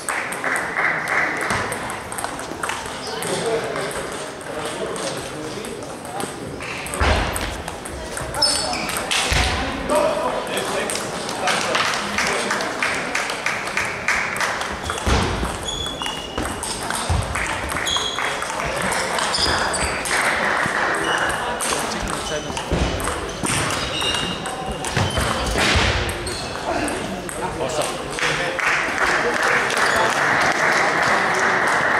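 Table tennis balls clicking and pinging on tables and bats from rallies elsewhere in a sports hall, over a background of chatter, with clapping near the start and again near the end.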